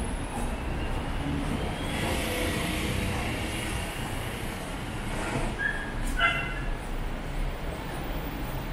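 City street ambience: a steady hum of traffic, with a brief, sharp high-pitched call about six seconds in.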